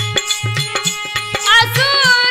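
Indian folk devotional music: hand-drum strokes in a steady rhythm over a held instrumental tone, with a singing voice coming in about one and a half seconds in.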